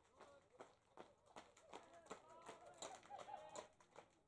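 Faint chatter of distant voices, with a few light clicks.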